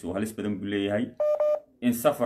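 A man talking, broken a little past halfway by two short beeps in quick succession, like telephone keypad tones.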